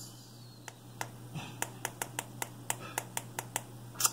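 A quick run of a dozen or so sharp, light tapping clicks at uneven spacing, starting under a second in and stopping just before the end.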